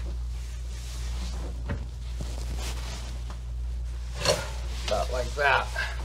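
A wrench turning a metal pipe fitting and valve on a tank, giving a sharp click about two seconds in and another sharp knock a little past halfway. A steady low hum runs underneath, and a brief voice comes near the end.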